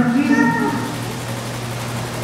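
A man's drawn-out voice through the mosque microphone, ending under a second in, followed by a steady low hum.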